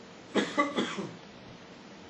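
A person coughing three times in quick succession, about half a second in.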